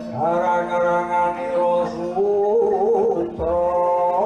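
Male voice singing a sulukan, the dalang's mood song of Banyumas Kidul Gunung-style wayang kulit, in long held notes with wavering ornaments and a short breath about three and a half seconds in.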